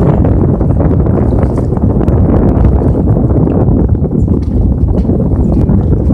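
Wind buffeting the phone's microphone on an open boat: a loud, steady low rumble that does not let up.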